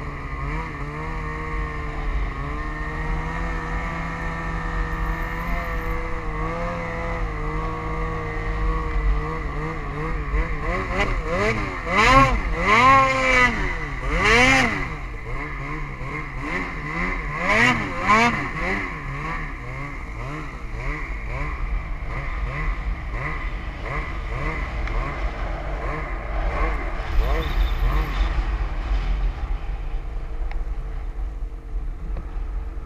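A vehicle engine running steadily under a low rumble, its pitch rising and falling quickly several times in a row between about 11 and 19 seconds in, then settling back to a steady drone.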